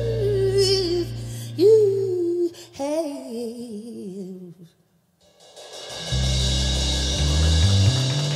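A woman singing a wavering, drawn-out vocal line live with a band. The bass drops out about a second and a half in and her voice carries on alone, then there is a moment of silence around five seconds. Bass, keys and drums come back in together near the end.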